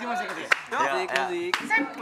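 Voices chanting a repeated line, punctuated by a few sharp hand claps.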